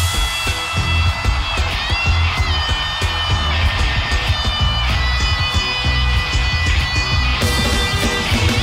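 Live rock band playing an instrumental passage: electric guitar holding notes with upward bends over pulsing bass and drums.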